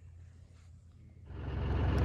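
A faint low hum, then about a second in a vehicle engine idling starts abruptly and runs on, loud and steady with an even low pulse.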